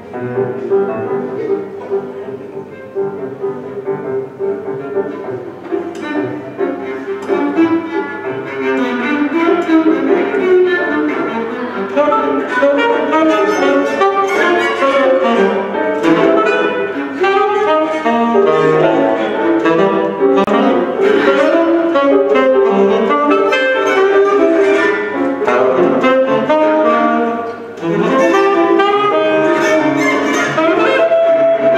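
Free jazz improvisation on saxophone, viola and grand piano. It opens sparser and quieter and builds into a dense, louder passage about nine seconds in, with a brief drop just before the end.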